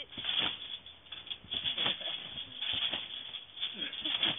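Backyard trampoline rattling and thumping irregularly as people bounce on it: short, noisy knocks a few times a second.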